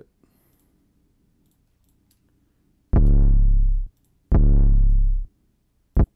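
808 bass sample tuned down to C sharp, auditioned in FL Studio: two deep notes of the same pitch, each about a second long and starting abruptly, a little over a second apart, with a third cut short at the very end. Faint mouse clicks come before them.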